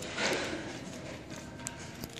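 Ferret licking at the metal sipper tube of a water bottle: a short rattling burst near the start, then a few faint ticks, over steady room noise.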